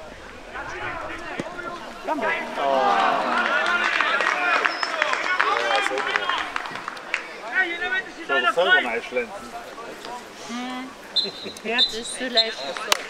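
Players and spectators shouting and calling across a football pitch, several voices overlapping, with scattered short knocks. A short high whistle sounds twice near the end.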